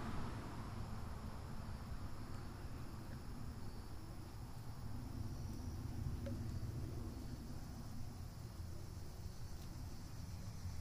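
Quiet outdoor background: a low, steady rumble with faint insect chirping high above it.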